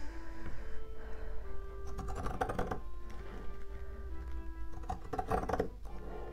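Background music with soft held notes, over which scissors snip through fabric in two quick runs of cuts, about two seconds in and again near the end, as the edges of a fabric cover are trimmed.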